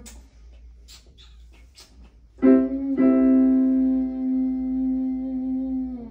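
Piano keyboard notes struck about two and a half seconds in and again half a second later, held at a steady pitch for about three seconds, after a couple of quiet seconds with faint clicks.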